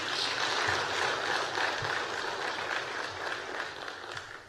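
Audience applause, a steady clapping that dies down near the end.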